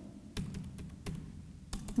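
A few separate keystrokes on a computer keyboard, with two quick ones near the end, as lines of code are typed in a text editor.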